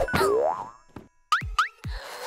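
Cartoon sound effects: a wobbling, falling "boing" at the start, then a short pause and two quick rising swoops with soft low thuds near the end.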